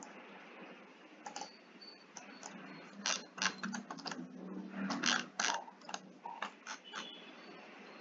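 Clicks of a computer mouse and keyboard: a few about a second in, then a quick irregular run from about three to seven seconds, over a low steady hiss.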